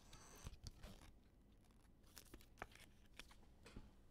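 Near silence: room tone with a few faint, short rustles and light clicks.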